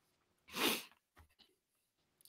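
A person's single short, sharp breath sound, about half a second in: a quick burst of breathy noise with no voice in it.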